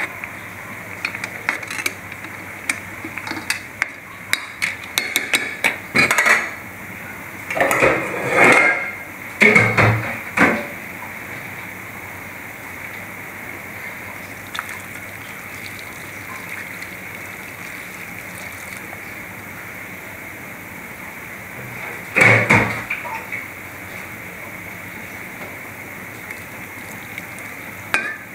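Metal ladle knocking and scraping against a large aluminium pot as rice is spread across it. Scattered clatters fill the first ten seconds, with one more burst about two-thirds of the way through, over a steady hiss.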